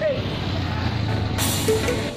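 A motor vehicle engine running with a low steady rumble, and a short burst of hiss about one and a half seconds in.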